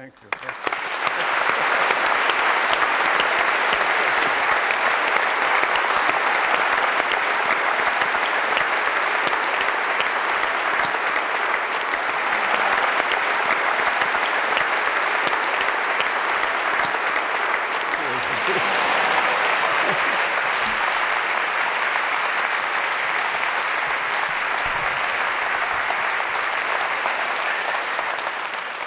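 Large audience applauding: the clapping starts suddenly just after a spoken "thank you" and continues steadily and loudly.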